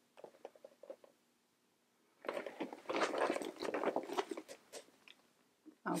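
Handling noise of two small monogram canvas handbags being shifted in the hands: a few faint clicks, then about two seconds in a crackly rustle of many small ticks that lasts about three seconds.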